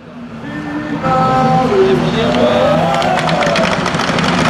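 Engines of a grid of autocross touring cars running at the start line, fading in and jumping louder about a second in, with rapid clicking or crackling in the second half.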